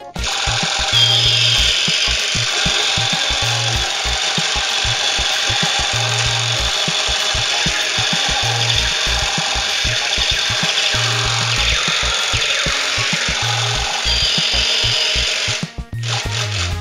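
Battery-operated light-up toy pistol's electronic sound effect, a harsh buzzing rattle with a brief rising whine near the start and again near the end, running while the trigger is held and cutting off suddenly. A background music beat runs underneath.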